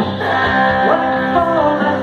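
Live electric guitar playing through a small PA, with a lead melody line from the front man's microphone that slides and bends in pitch.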